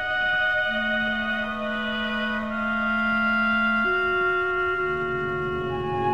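Symphony orchestra playing slow, sustained held notes. A low note enters about a second in and steps up about four seconds in, and further low notes join near the end.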